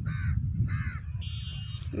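Two short bird calls about half a second apart, followed by a thin steady high tone lasting under a second, over a low rumble.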